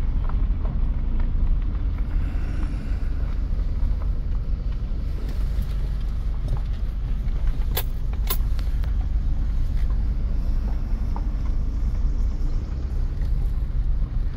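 Steady low rumble of a vehicle creeping along at walking pace, heard from inside the cab: engine and tyre noise. A couple of short sharp clicks come a little past halfway.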